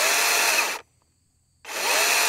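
DeWalt DCCS677 60V brushless battery chainsaw running free with its chain spinning in short trigger pulls. It stops a little under a second in and starts again about a second and a half in. Each time it spins up to one steady speed within a fraction of a second and cuts off when released: the on/off trigger has no variable speed.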